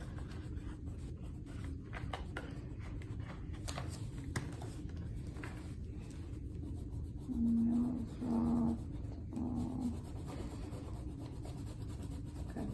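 Wax crayons scratching and rubbing on paper in quick, uneven strokes. About seven seconds in, someone hums three short, level notes.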